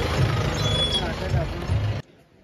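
An SUV's engine running as it drives slowly past close by on a narrow street, mixed with people's voices.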